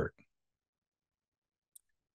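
Near silence after the end of a man's spoken word, broken by two faint short clicks: one just after the word and one near the end.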